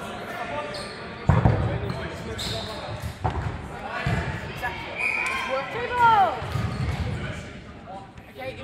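A ball thudding several times on a sports hall's wooden floor, irregularly spaced and loudest about a second in, with players shouting in the echoing hall.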